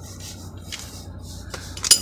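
Wrench working on the 17 mm filler bolt of a Proton Wira's aluminium gearbox case: light metallic scraping and a few small clinks, then one sharp metal click near the end.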